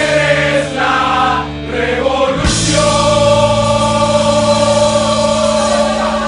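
Soundtrack music with a choir singing long held chords, moving to a new chord about two and a half seconds in.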